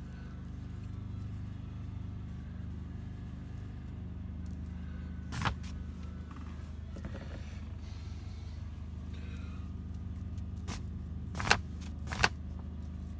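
A steady low mechanical hum runs throughout. A sharp knock comes about five seconds in and two more near the end, with faint soft scraping between them.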